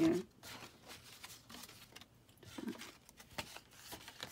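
Light rustling and small scattered taps and clicks of a cardstock treat box and paper craft pieces being handled and moved about.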